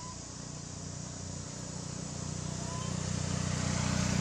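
A motor vehicle's engine hum, growing steadily louder as it draws closer, over a steady high buzz of insects.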